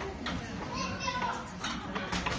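Background chatter of children's voices in a public hall, with a few sharp clicks or knocks.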